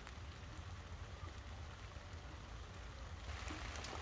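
Faint steady patter of light rain, with a low rumble underneath.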